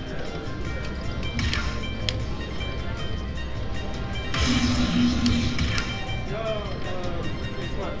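Dragon Link slot machine's hold-and-spin bonus sounds: electronic music and chime tones as the reels respin, with a louder rush of sound from about four and a half to six seconds in.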